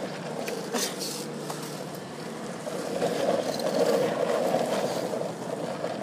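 Longboard wheels rolling on asphalt, a steady rumbling that grows louder about halfway through, with a couple of sharp clicks in the first two seconds.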